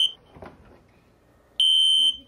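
Smoke alarm sounding a high-pitched steady beep in the three-beep fire evacuation pattern. One beep cuts off just after the start, and after a pause of about a second and a half the next group begins near the end.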